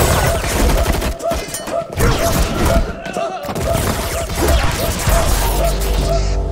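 Film battle soundtrack: rapid gunfire and hard impacts over a dramatic score with a quick, evenly repeating note and a deep low rumble.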